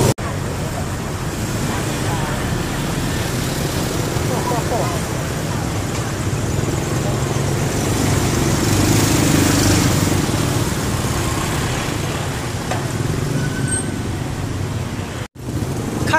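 Street traffic: motorbike and car engines running and passing, with people's voices in the background. The sound drops out briefly just after the start and again about a second before the end.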